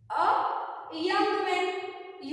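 Only speech: a woman's voice speaking two short phrases, the first beginning with a breathy rush of air.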